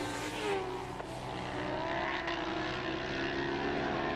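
Superbike race motorcycle engines running at high revs, several engine notes overlapping, their pitch gliding up and down as the bikes accelerate, shift and pass.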